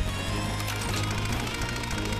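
Cartoon background music with held tones, with a brief low thump at the start.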